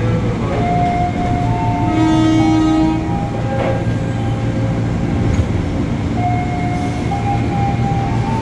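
Electric commuter train standing at a station platform with a steady low hum from its onboard equipment. A horn-like tone sounds for about a second, around two seconds in, among several shorter held tones.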